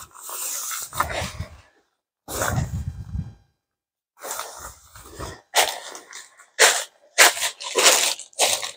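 Zipper of a polyester tent door being pulled open in a few short runs, then the tent fabric and something crinkly inside being handled, in short sharp rustling bursts near the end.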